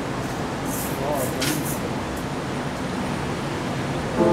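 Bar room noise with indistinct chatter from the audience, steady throughout, with a few brief sharp high-pitched sounds about a second in.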